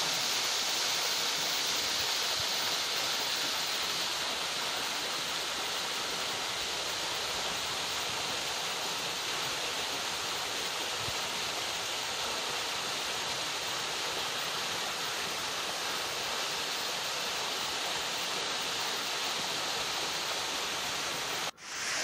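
Small waterfall splashing over rocks into a shallow pool: a steady rush of falling water. It cuts out briefly near the end.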